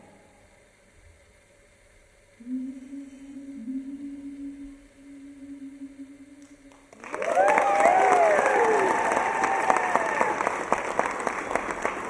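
Audience applause with whoops and cheering that breaks out about seven seconds in and keeps going, loud. Before it there is a short quiet spell and then a low steady tone.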